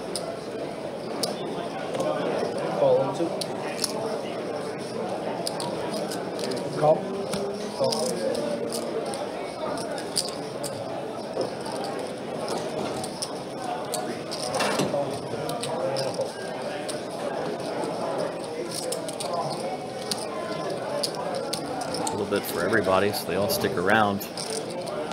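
Card-room background: a steady murmur of players' and dealers' voices, with scattered clicks of poker chips.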